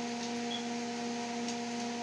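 Steady electrical hum, a few fixed pitched tones stacked over a faint background hiss, with no other event.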